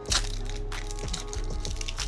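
Foil Pokémon card booster pack being torn open by hand: a sharp rip just after the start, then crackling and crinkling of the foil wrapper as it is pulled apart.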